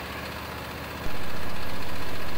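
Portable sawmill's Briggs & Stratton 35-horsepower petrol engine running steadily, its circular saw blade spinning free without cutting. The sound is subdued for about the first second, then comes up to a constant level.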